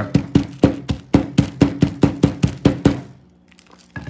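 Wooden pilón pestle pounding garlic cloves inside a plastic zip-top bag on a table, a quick even run of knocks about five a second that stops about three seconds in.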